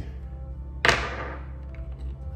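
Background music with a steady bed, and one sharp knock just under a second in that rings briefly.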